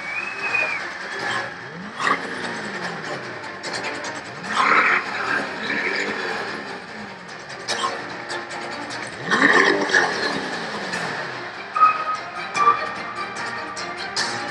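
Crowd clapping and cheering while the Corvette C8's V8 is revved three times, each rev rising and falling back, about two, five and nine and a half seconds in.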